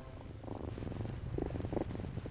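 A domestic cat purring softly, a fine fast rumble that starts about half a second in.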